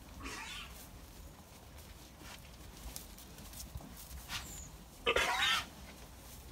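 Zwartbles sheep bleating: a short, fainter call near the start, then one loud wavering bleat about five seconds in.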